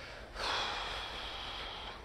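A person's long, breathy sigh or exhale, starting about a third of a second in and trailing off near the end.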